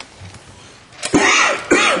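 A person's loud, breathy vocal bursts close to the microphone, starting about halfway in and coming in a few pulses, like a cough or a laugh.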